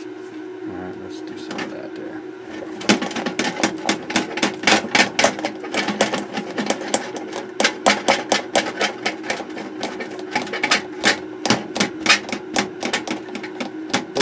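Terry cloth rubbing and scrubbing across the solder side of a circuit board in rapid, irregular strokes, starting about three seconds in, to clean cleaner and spilled residue off the traces. A steady low hum runs underneath.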